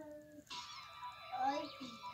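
Faint, short high-pitched vocal calls in the background, several of them rising and falling, over a faint steady high tone.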